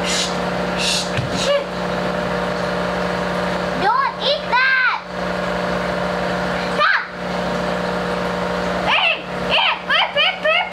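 A steady low hum of running aquarium equipment, with a child's short high-pitched vocal calls breaking in a few times, around four, five, seven and nine seconds in.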